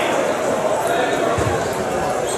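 Voices and chatter in a large indoor sports hall, with a dull thud about one and a half seconds in.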